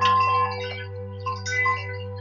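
Wind chimes tinkling in irregular clusters, a louder one at the start and another past the middle, over a steady low drone.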